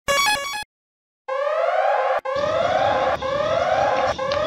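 A brief jingle of quick stepped electronic beeps, then a short silence, then an electronic whooping siren for a burglar alarm. The siren sweeps up in pitch three times, about one whoop a second.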